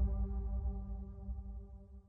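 Closing music: a sustained low synthesizer drone with steady held tones, fading out to silence.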